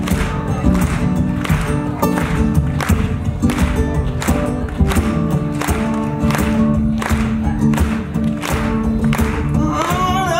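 Live pop-rock band playing: drums keep a steady beat about twice a second under bass and guitars.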